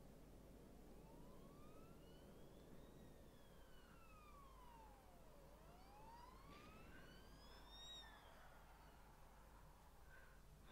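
A faint siren wailing slowly, its pitch rising and falling about every five seconds, over a low steady hum.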